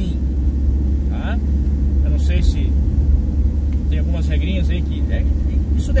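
Van running at road speed, heard from inside the cab as a steady low rumble of engine and road noise.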